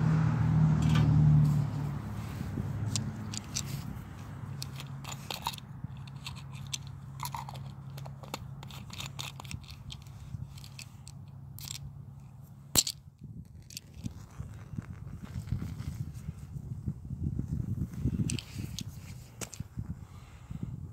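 Scattered crackles and clicks from handling around a small folding hexamine-tab stove as its fuel tab is relit, with a low wind rumble on the microphone at the start and one sharp click a little under halfway.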